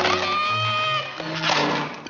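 A cartoon cat character's high frightened wail, held steady for about a second over orchestral underscore, followed by a short burst of noise.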